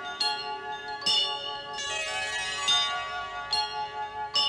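Bell-like chimes struck a few times, about a second apart, each tone ringing on and overlapping the next, as a short musical transition.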